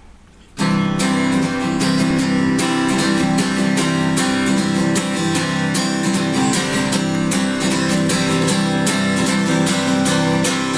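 Acoustic guitar strummed in a steady rhythm, starting about half a second in: the opening of a song, before any singing.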